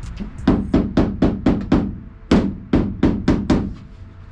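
A hammer tapping in quick light strikes, about a dozen in two runs, driving push-in clips to fasten a plastic wheel well cover inside a cargo van.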